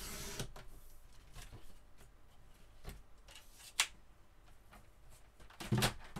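Sliding-blade paper trimmer cutting through a strip of cardstock, a brief scratchy hiss at the start, followed by light clicks and knocks of handling the trimmer and paper: a sharp knock about four seconds in and a heavier clatter just before the end.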